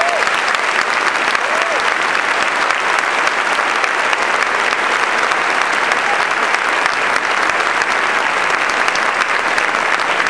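An audience applauding, dense steady clapping that keeps up without a break.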